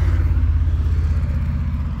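A motor vehicle's engine running steadily at a low pitch, growing a little quieter toward the end.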